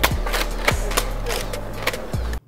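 Underground station corridor ambience: a steady low rumble with several sharp clicks and knocks at irregular spacing.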